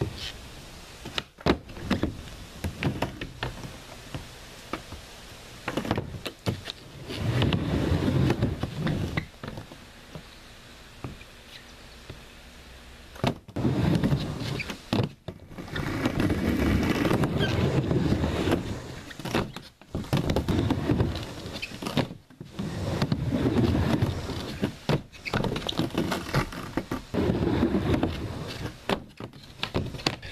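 Skateboard wheels rolling on a plywood bank ramp in repeated runs of a few seconds each, with sharp clacks and thuds of the board hitting the wood in between.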